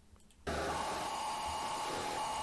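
A steady hiss with a faint hum begins suddenly about half a second in after dead silence: the noisy opening of a music video's soundtrack starting to play.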